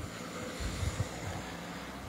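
A car driving slowly past close by, its engine and tyres giving a steady sound.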